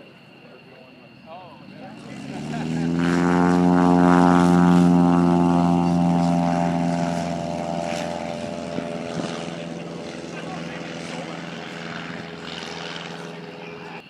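A propeller airplane's engine passing along the runway: a steady, pitched engine note that swells quickly about two seconds in, is loudest around four seconds in, then fades slowly.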